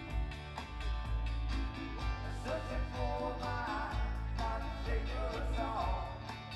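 Live band music with a steady beat: electric bass, keyboard and electric guitar, with a wavering sung melody line in the second half.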